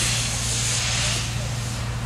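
Steady background noise: a constant low hum under a hiss that swells and fades.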